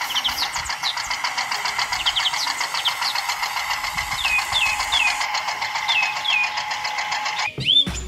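Small electric motor and plastic gearbox of a remote-controlled toy tractor running steadily under load as it drags a disc harrow through sand: a buzz with fine, rapid ticking that cuts off suddenly near the end. A few short falling bird-like chirps come in about halfway through.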